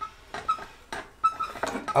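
Adjustable wrench turning the threaded spindle of a bearing press tool on a BMW E36 rear trailing arm, pressing out the old wheel bearing under load: a few faint clicks and several short, high squeaks.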